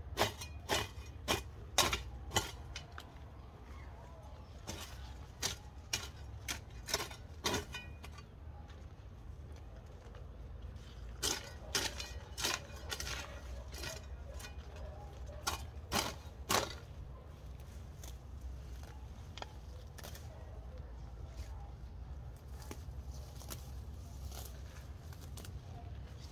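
Sharp clicks and snaps in four short clusters of several each, over a steady low rumble, as a man works by hand among young corn plants.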